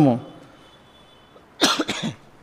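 A man coughing: a short run of quick coughs near the end, into his fist close to the microphone.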